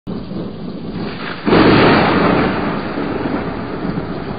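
Thunder sound effect: a rumble that breaks into a loud thunderclap about a second and a half in, then rolls on steadily.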